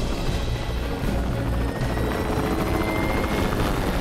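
Helicopter running, rotor and turbine together, with a faint whine that rises slowly through the middle of the sound.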